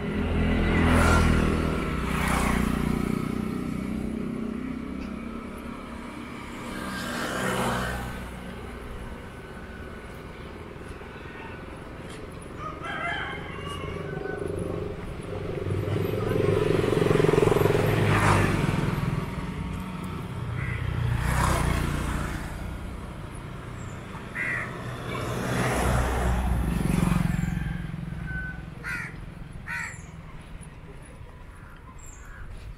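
Motorcycles and scooters passing one after another, about six times, each engine rising and fading as it goes by.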